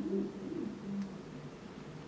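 A bird cooing in low calls that rise and fall in pitch.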